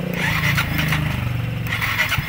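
Yamaha Mio i 125 S scooter's single-cylinder four-stroke engine running just after being started, with a steady low note that settles into an evenly pulsing idle near the end.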